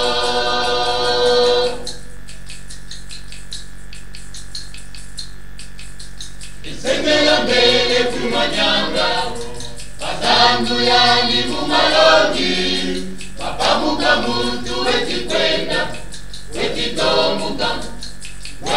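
A choir singing a Kikongo religious song: a held chord of several voices ends about two seconds in, a quieter pause follows, and about seven seconds in the voices come back in with short phrases, several in a row.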